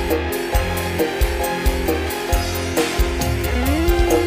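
Instrumental band music with a steady drum beat, bass and plucked guitar-like notes. A held note slides upward near the end.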